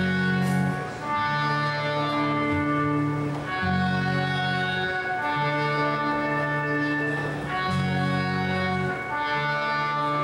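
Live band playing a song with no vocals: electric bass and held chords that change every one to two seconds.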